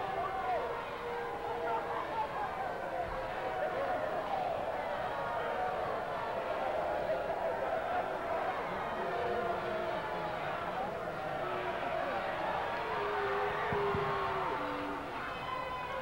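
Wrestling crowd shouting and calling out after the match, many voices overlapping at a steady level, with single shouts standing out now and then.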